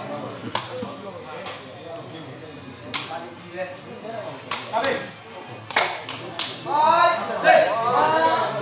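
Sepak takraw ball being kicked during a rally: a series of sharp smacks at irregular intervals, several in quick succession around the middle. Voices shout near the end.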